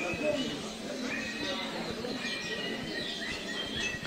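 Market background ambience: indistinct, distant voices and a low steady murmur.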